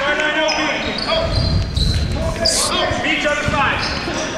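A basketball bouncing on a hardwood gym floor, a run of low thumps from about one to two and a half seconds in. Players' voices call out across the hall.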